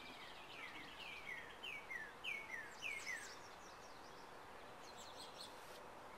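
A songbird singing a run of down-slurred whistled notes, about two a second and growing louder, that stops about three seconds in; a few short, higher chirps follow near the end. A faint steady outdoor hiss lies underneath.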